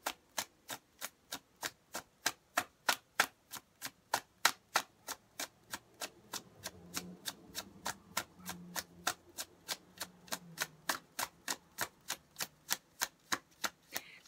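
A deck of tarot cards being shuffled overhand: a steady run of crisp card clicks, a little over three a second, as small packets of cards slap down onto the deck.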